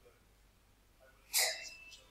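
A single short, sharp burst of breath or voice from a person, about one and a half seconds in, with a strong hissing top.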